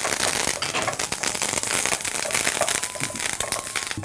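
Curry leaves, dried red chillies and mustard seeds sizzling and spluttering in hot oil in a steel pan as a tempering: a dense, steady crackle of fine pops.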